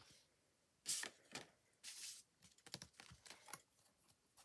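A sheet of printed card being handled and moved: two short papery rustles, about one and two seconds in, then a few faint light taps.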